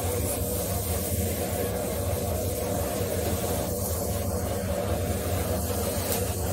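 Sheets of glutinous rice crust (guoba) deep-frying in a wok of hot oil: a steady sizzling hiss over a low steady hum.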